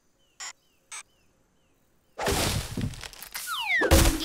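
Cartoon sound effects: two short taps, then about two seconds in a loud rushing whoosh with a falling whistle, ending in a thunk.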